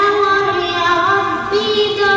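A young girl singing an unaccompanied Arabic nasheed. She slides up into a long held vowel, ornaments it slightly, and moves to a new note about one and a half seconds in.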